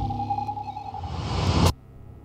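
Cinematic intro soundtrack: a held electronic tone over a low drone, with a hissing swell that rises and then cuts off suddenly near the end, leaving a low hum.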